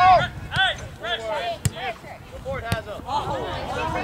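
Players' voices calling out in short shouts on an outdoor soccer pitch, with two sharp thuds of a soccer ball being kicked, one a little before halfway and one about two-thirds of the way in.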